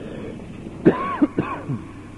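A man clearing his throat twice in quick succession, about a second in: two short, gravelly bursts.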